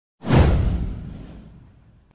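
Intro whoosh sound effect with a deep low boom, starting suddenly and fading away over about a second and a half.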